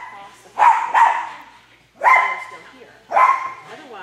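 A dog barking sharply four times: two barks close together just under a second in, then one about every second after. Each bark echoes in a large indoor arena.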